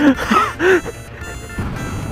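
A man laughing in short breathy bursts through the first second. A low motorcycle engine and wind rumble comes in near the end as the bike moves off.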